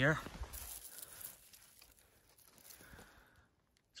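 Faint rustling and scraping of dry soil and dead grass as a fossil fragment is picked up off the ground by hand. It is loudest in the first second and then dies away.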